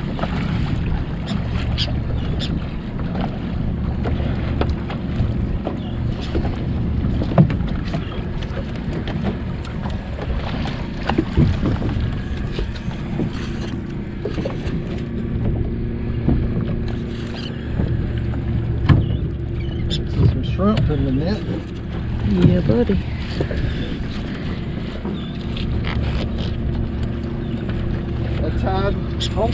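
90 hp Yamaha outboard motor idling steadily while the trawl net is hauled in by hand, with a few sharp knocks along the way.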